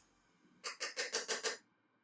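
A makeup brush is worked quickly against a pressed matte blush pan to pick up powder, making about six short brushing strokes in about a second.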